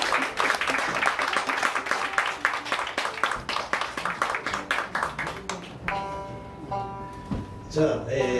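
Audience applause at the end of a bluegrass tune. The clapping thins out about six seconds in, and a steady held note is heard for the last couple of seconds.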